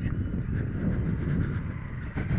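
Motorcycle engine running steadily at low speed, a low rumble with no clear revving.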